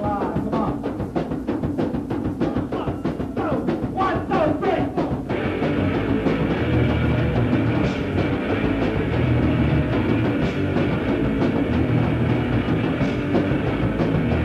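Late-1970s punk rock recording: fast, busy drumming with guitar for the first five seconds or so, then the full band crashes in with distorted guitars and a heavier, denser sound that runs on.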